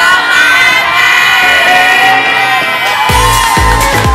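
A group of people cheering and shouting together in one long, held cheer. About three seconds in, pop music with a heavy thumping beat starts.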